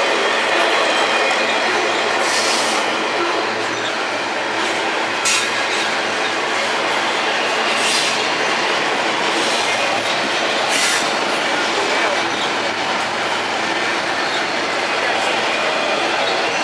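Double-stack intermodal freight train rolling past, its steel wheels making a steady, loud rumble on the rails. Brief high-pitched wheel squeals break through a few times.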